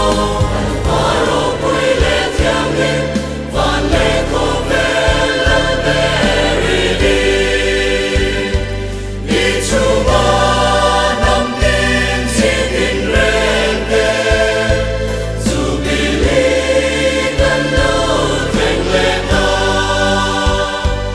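Mixed choir of men's and women's voices singing a Christian church song, with musical accompaniment.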